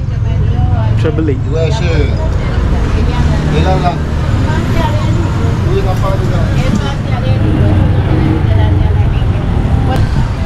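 Outdoor street noise: a steady low rumble with indistinct voices talking throughout.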